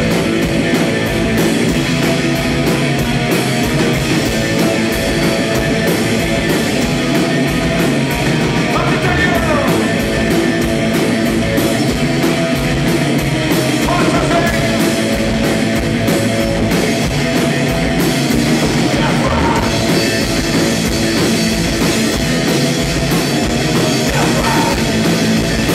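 A loud live sludge/noise-rock band playing: distorted electric guitar, bass guitar and drum kit, steady and continuous.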